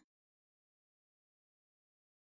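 Complete silence: the sound track drops out entirely, with no sound at all.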